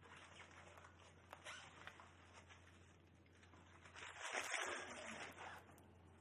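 Quiet room with a few faint clicks, then about four seconds in a brief, louder rustle lasting about a second.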